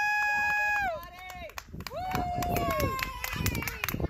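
High-pitched voices cheering in long held 'woo' shouts: one that carries on to about a second in and another about two seconds in, with scattered sharp claps.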